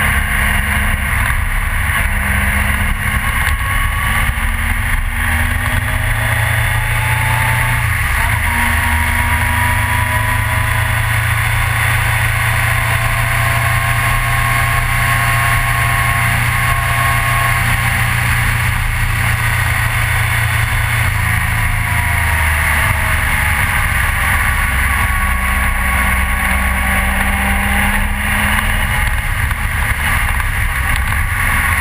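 Triumph Trophy touring motorcycle's engine running at road speed, its note rising and falling slowly as the throttle eases on and off, under steady wind and road noise.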